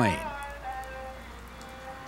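Soft background music of long held notes over a steady hiss of rain.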